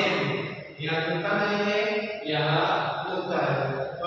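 A voice chanting the names of Arabic letters in a drawn-out sing-song recitation, each syllable held steady, with short breaks between them.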